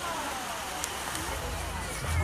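Outdoor crowd ambience in the rain: faint voices over a steady hiss, with a low rumble on the microphone building from about halfway through.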